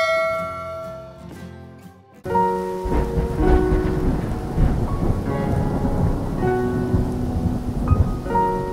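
A held music chord fading out over about two seconds. Then it cuts suddenly to steady rain with low thunder rumbling, soft music notes sounding over it.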